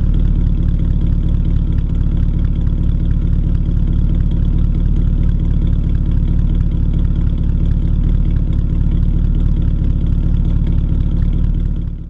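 1917 Hudson Super-Six's six-cylinder engine idling steadily, heard close up at the tailpipe as an even exhaust note. It fades out at the very end.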